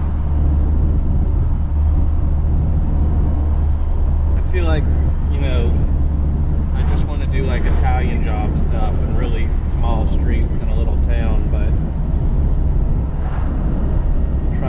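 Classic Mini Balmoral Edition driving, heard from inside the cabin: a steady low drone of engine and road noise, with a voice talking over it through the middle.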